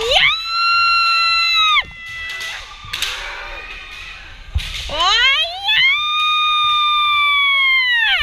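Two long, drawn-out kendo kiai shouts, each sliding up in pitch, held high and steady, then falling away; the second, near the end, is the longer and louder. A couple of sharp knocks, as of bamboo shinai, sound between them.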